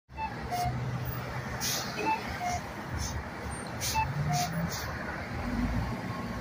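A 2006 Orion V transit bus running at a stop, with a low engine hum and short bursts of air hiss. A two-note descending beep sounds three times, about every two seconds.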